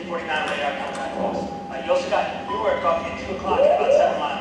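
Muffled dialogue from a film soundtrack, played over a hall's loudspeakers to an audience.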